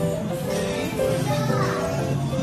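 Background music with a steady melody, with voices under it.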